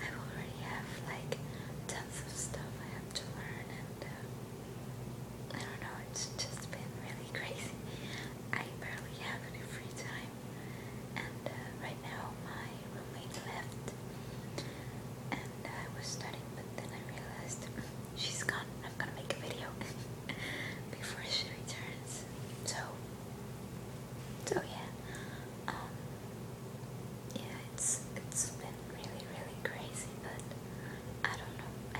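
A woman whispering, talking on and off, over a steady low hum.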